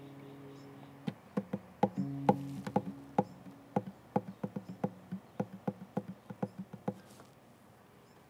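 An acoustic guitar's last strummed chord ringing out and fading. From about a second in, an irregular run of sharp clicks, about three or four a second, stops near the end.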